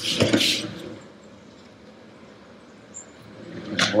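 A kitchen drawer sliding shut with a short clatter right at the start, then quiet room tone; near the end another drawer is pulled open.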